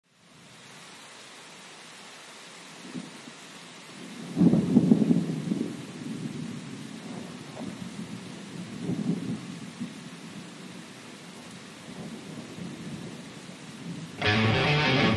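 Thunderstorm: steady rain hiss with rolling thunder, a loud rumble about four seconds in and fainter rumbles after it.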